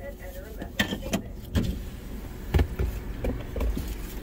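Low, steady rumble of a car idling, broken by several sharp knocks and clicks about a second apart in the first half.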